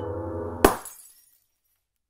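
A low droning music bed is cut off by a single sharp crash of breaking glass, a light bulb shattering as a sound effect, about two-thirds of a second in. Its bright tinkle dies away within about half a second.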